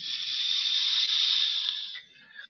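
A steady airy hiss, about two seconds long, of breath drawn through a small handheld mouthpiece held to the lips.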